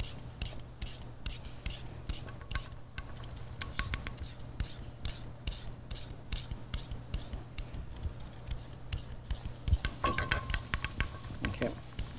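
Vegetable peeler scraping down a baby carrot in quick repeated strokes, a few a second, shaving ribbons into a stainless steel bowl.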